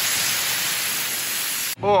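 A 60,000 psi waterjet stream hissing steadily as it cuts across a ballistic-gel dummy hand on the cutting table. The hiss cuts off suddenly near the end.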